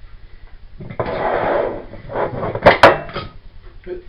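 A biscuit jar being opened and handled on a kitchen counter: a scraping rub about a second in as the lid comes off, then a few sharp clinks and knocks as the jar is moved about.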